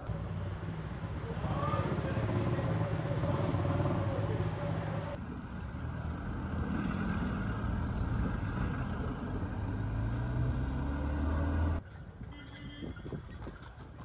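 Motor-vehicle engine rumble with street noise, low and steady, changing abruptly about five seconds in and dropping away near the end.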